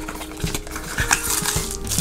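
A slim cardboard box being opened at its end and a paper-wrapped shaving brush slid out: a few light taps and knocks of cardboard with a soft rustle of card and wrapping.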